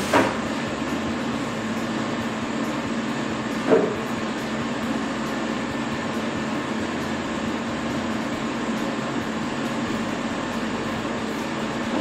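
Steady running noise of workshop dust-extraction equipment, a dust collector and a ceiling-mounted air filtration unit, with a low hum under it. One short knock about four seconds in.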